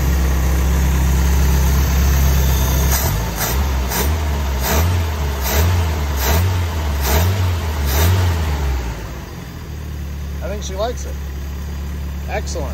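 1985 Nissan 720's four-cylinder petrol engine running on a freshly fitted Weber 38/38 carburettor, its choke not hooked up. It runs steadily at first; about three seconds in it is revved in a run of quick throttle blips, about three-quarters of a second apart. After about nine seconds it settles back to a lower, steady idle.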